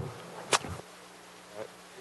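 Low steady electrical hum and hiss from the talk's microphone and sound system, with one short sharp click about half a second in.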